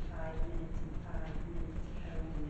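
Indistinct voices talking in a meeting room, too faint or distant for the words to be made out, over a steady low rumble.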